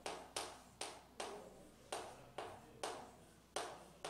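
Chalk on a chalkboard: a series of sharp taps and short scratches, about two a second, as a stick of chalk writes Korean letters stroke by stroke.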